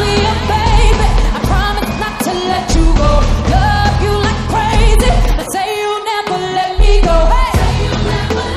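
Live pop/R&B song: a female lead vocal sung over a full band with heavy bass and drums. The bass and drums drop out briefly a little past halfway, then come back in.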